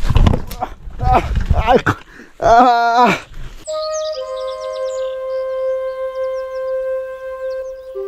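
A voice talking for the first three seconds, then background music coming in: one long held note that steps down once early on, with short high bird-like chirps above it.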